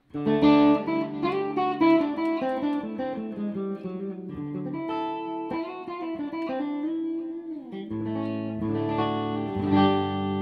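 Hofner Galaxie reissue electric guitar played clean through an amp on its middle mini-humbucker pickup: ringing chords and single notes, with fresh chords struck about eight seconds in and again near the end.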